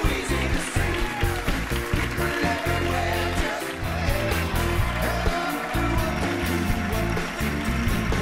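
Studio band playing upbeat rock music, with a moving bass line under a steady drumbeat.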